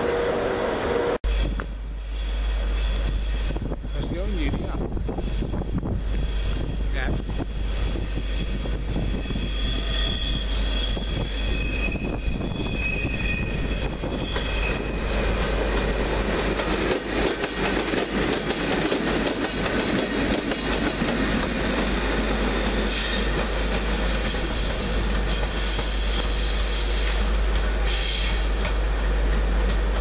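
Two Class 90 electric locomotives, DB Schenker 90036 hauling 90024, rolling slowly through pointwork with their wheels squealing against the rails on the curves. The high squeal comes twice, through most of the first half and again near the end, over a steady rumble of wheels on rail.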